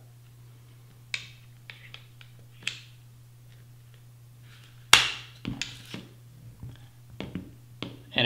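Daniel Defense polymer buttstock being worked off a mil-spec AR-15 buffer tube by hand, its release tabs pressed in. A few light clicks are followed, about five seconds in, by a sharp loud snap as the stock releases, then lighter clicks and rattles as it slides off the tube.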